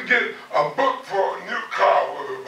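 A man preaching in short, emphatic phrases.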